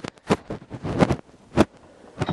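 A handful of short, sharp knocks and clicks at irregular intervals, with rubbing and handling noise from the camera being moved about.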